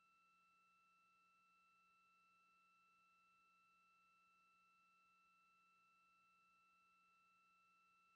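Near silence: a faint, steady electronic tone of a few high pitches over a low hum and hiss, unchanging throughout.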